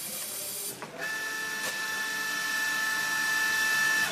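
Automatic two-head pouch filling machine running: a steady high whine with hiss starts about a second in and cuts off suddenly at the end.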